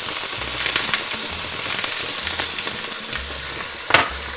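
Chicken breasts searing in olive oil in a stainless steel frying pan over medium-high heat: a steady sizzle with scattered small crackles, and one sharper pop near the end.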